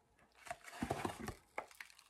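Faint crinkling and light ticks of a plastic cookie bag being handled, starting about half a second in.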